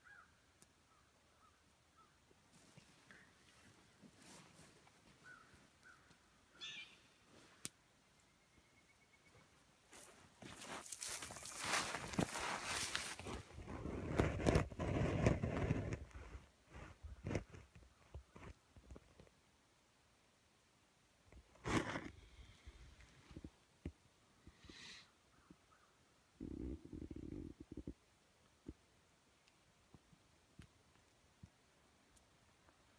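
Quiet ambience broken by several seconds of rustling and handling noise near the middle, with scattered knocks. A few faint bird calls come at intervals.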